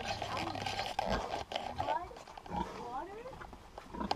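Piglets squealing and grunting close up: short squeaky calls that rise and fall, coming in a quick run about halfway through.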